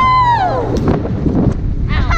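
A girl's high-pitched scream on a fast tube ride, held for about half a second before falling away. Rough wind rumble and thumps buffet the microphone after it.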